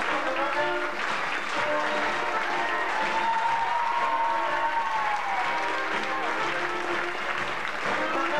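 Audience applause over curtain-call music from the show's band.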